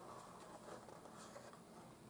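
Near silence, with faint rustling of a paper polyhedron model as hands turn it.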